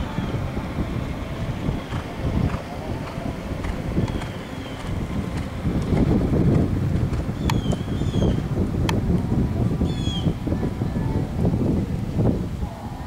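Wind rumbling on the camera microphone, swelling and fading, loudest a little past the middle. A few short high chirps and sharp clicks sound over it.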